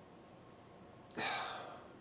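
A man's audible breath: a single rush of air about a second in, starting suddenly and fading away over most of a second, before he speaks again.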